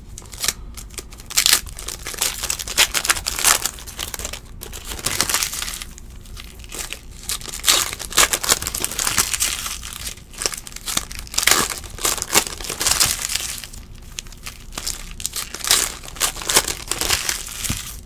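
Foil trading-card pack wrappers crinkling and tearing as the packs are handled and ripped open, in irregular bursts of rustling.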